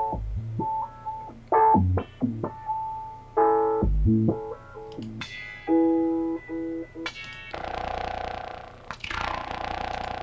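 Piano chords run through Studio One's AutoFilter plugin, its step-pattern presets gating the chords into short rhythmic stabs and changing their tone. Over the last two and a half seconds the sound becomes a denser, steadier filtered tone.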